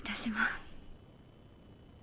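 A woman's soft, whispered reply in Japanese, under a second long, at the start; after it only faint background hiss.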